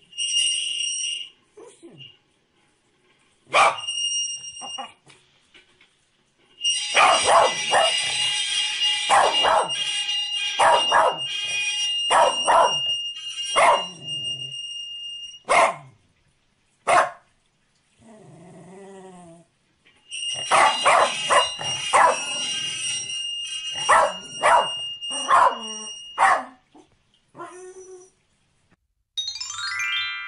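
A corgi barking in quick runs of sharp barks, with a short whining cry in a lull between them. A steady high-pitched tone sounds along with the runs of barking.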